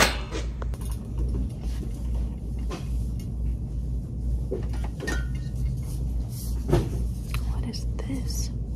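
A sharp knock at the start as a packet is dropped into a wire shopping cart, then a steady low rumble with a few scattered knocks and rustles of items being handled.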